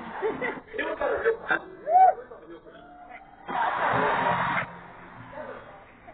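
Indistinct voices, loudest about two seconds in, then a rush of noise lasting about a second.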